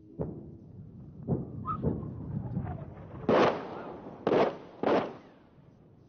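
Artillery shells exploding about a kilometre away: a run of sharp blasts, fainter ones at first, then three loud ones in quick succession between about three and five seconds in, each with a short rumbling tail.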